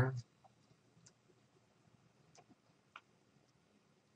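A few faint, isolated computer mouse clicks, about a second apart, while painting, over a low room hum. The tail of a spoken word is heard at the very start.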